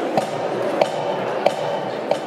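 Murmur of a crowd in a large hall, with three sharp, evenly spaced knocks about two thirds of a second apart, each with a short ringing tone.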